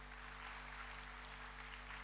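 Low room tone of a hall between sentences: a steady electrical hum with a faint, even hiss.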